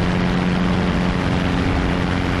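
Single-engine light propeller airplane in level flight: the engine and propeller drone at a constant pitch over a steady rush of wind.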